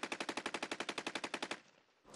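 Automatic rifle fire: one burst of rapid shots, about a dozen a second, lasting about a second and a half and then stopping.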